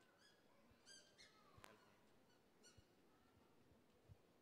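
Near silence: room tone, with a few faint, brief high-pitched sounds and a single soft click about a second and a half in.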